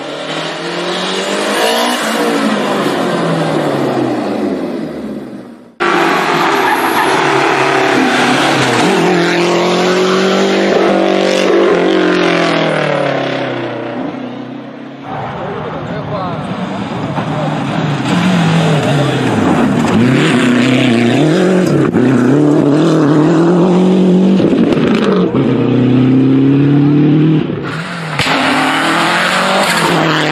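Rally car engine revving hard, its pitch climbing and dropping again and again through gear changes. The sound is cut abruptly between recordings a few times.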